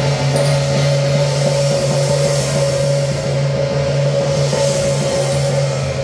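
Temple procession percussion: a hand gong and drums beaten in a rapid, unbroken rhythm, with a steady ringing tone sustained underneath.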